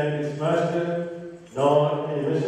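A solo man's voice chanting a liturgical text on long held notes, pausing briefly for breath about a second and a half in before going on.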